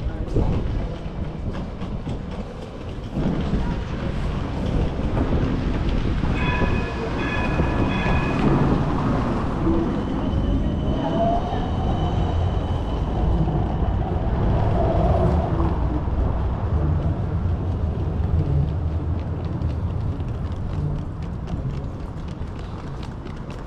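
Amsterdam city tram running along the street: a steady low rumble of wheels and running gear. A brief high ringing comes about seven seconds in, and a rising whine follows a few seconds later.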